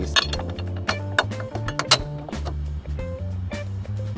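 Background music: a steady bass line and held tones, with a few sharp clicks.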